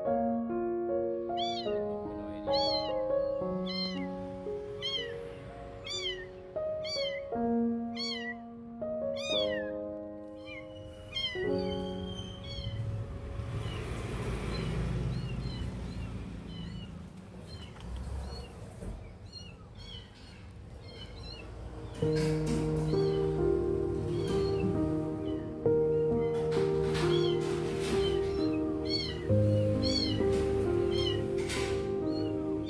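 Newborn kitten mewing in short, thin, high cries about once a second, pausing midway and then starting again, over background music: piano in the first half and a louder music track from about two-thirds of the way in.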